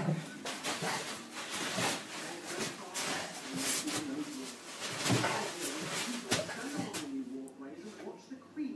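Weimaraner dogs tussling on a dog bed: repeated rustles, scuffs and knocks, with wavering low grumbling vocal sounds at intervals.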